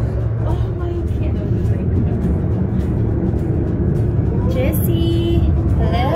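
Steady low rumble of a funicular car running on its rails, heard from inside the car, with a voice briefly near the end.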